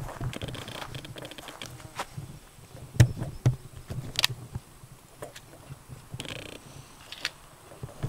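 A plastic two-liter soda bottle being set down and adjusted on top of a wooden post: a few light knocks and rustles, the sharpest about three seconds in. Faint insect buzz runs underneath.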